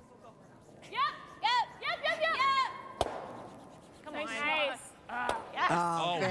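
Curlers shouting high, drawn-out sweeping calls to each other as their brooms scrub the ice. There is one sharp knock about halfway through.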